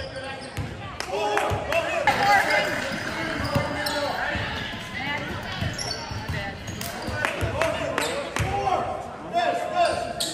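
Basketball bouncing on a hardwood gym floor, sharp repeated knocks, with players and spectators talking and calling out around it.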